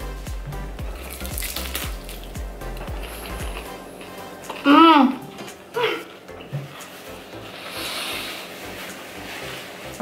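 Background music with a low beat that stops a little under four seconds in. About five seconds in comes a loud hummed 'mm' from someone eating, then a shorter one, over faint chewing of crispy fried tacos.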